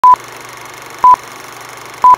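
Film countdown leader sound effect: two short, loud, high single-tone beeps a second apart over a steady hiss.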